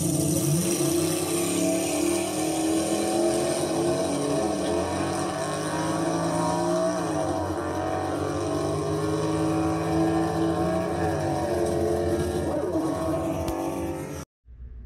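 A car engine running steadily at speed, its pitch dipping and rising a couple of times as the revs change.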